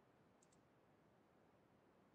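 Near silence: faint room tone, with two quick faint clicks about half a second in, a computer mouse double-click.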